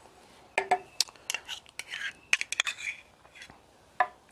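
Metal utensils clinking and scraping against small stainless-steel ramekins: a series of short, irregular clicks and clinks as food is picked up and mayonnaise is scooped out with a knife.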